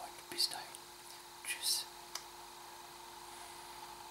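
Soft whispered speech, two short breathy sibilant whispers in the first two seconds, then only steady room hiss with a faint constant hum.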